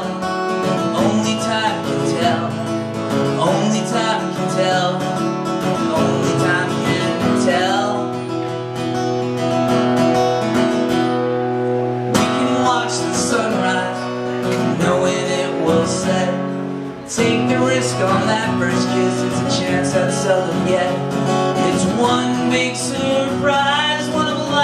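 Acoustic guitar strummed steadily in a live solo performance, with a man's singing voice coming and going over it; the playing eases briefly about 17 seconds in, then picks up again.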